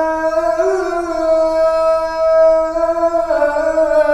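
A man's voice chanting the Islamic call to prayer (adhan). He holds one long note with small melodic turns about a second in and again near the end.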